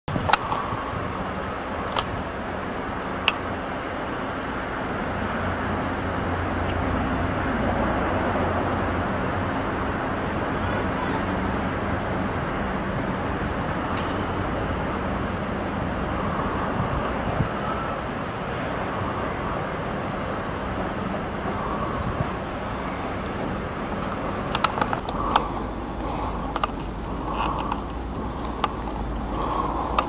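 Steady low hum of a running vehicle engine under an even outdoor background noise, with a few sharp clicks and more frequent clicks and low rumble near the end.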